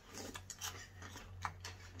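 Faint crunching and small irregular clicks of Kellogg's Krave cereal being eaten with spoons from bowls, over a low steady hum.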